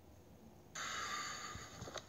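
Cloth rustling close to the microphone for about a second, as a gray garment is handled in a search for lost keys; it starts suddenly after a short quiet.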